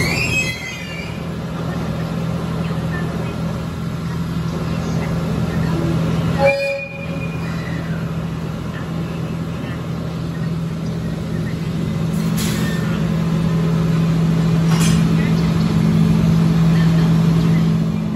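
HD300 hybrid shunting locomotive running with a steady low engine hum that grows louder as it moves up to couple onto the train, with a short horn toot about six and a half seconds in and two brief clanks later on.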